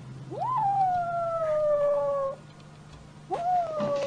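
A cat giving two long, drawn-out meows. The first swoops up and then slowly falls in pitch over about two seconds; the second begins near the end and holds at a steady pitch.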